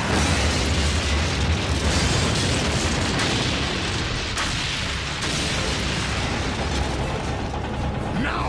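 Explosion sound effects: a continuous heavy rumble with sharper blasts breaking in a few times around the middle, as a starship's power core blows up.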